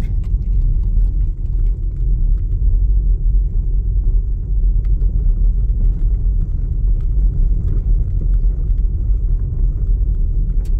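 A car driving on a rough dirt road, heard from inside the cabin: a steady low rumble of tyres and road noise, with faint scattered ticks.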